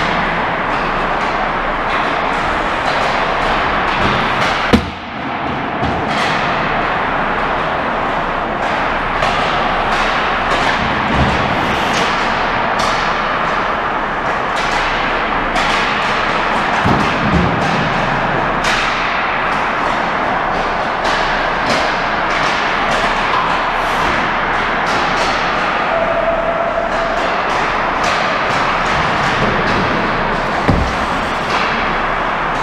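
Hockey practice on ice: a steady wash of skating with frequent sharp clacks of sticks and pucks, and one loud hit close by about five seconds in. Music plays along with it.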